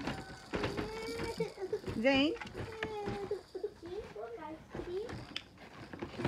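Young children's voices babbling and calling out without clear words, with a long drawn-out vocal sound early on and a sharp high squeal about two seconds in.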